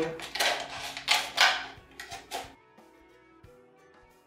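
Scissors snipping through a clear plastic soda bottle: several loud, crackly cuts in the first two and a half seconds, then the cutting stops and only faint background music remains.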